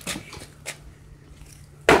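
Cheap skateboard with plastic wheels and trucks tossed into a flip, landing on concrete with a sudden loud clatter near the end.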